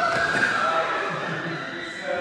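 A person's drawn-out voice without clear words, held on a near-steady pitch and slowly fading.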